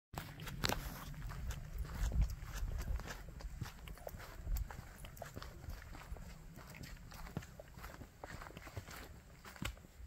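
Footsteps of two people walking on a dirt trail strewn with dry leaves, an irregular run of crunches and scuffs over a low rumble.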